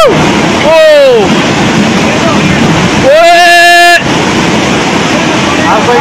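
Flash-flood water from a cloudburst rushing through a street, a steady loud rush, with people's high-pitched cries over it: a short falling cry about a second in and a long held cry from about three to four seconds.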